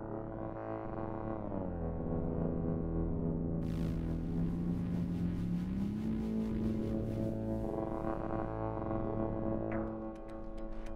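Synthesizer music: sustained drone tones that glide down in pitch about one and a half seconds in and back up about six seconds in. A hissing, crackling texture comes in a few seconds in.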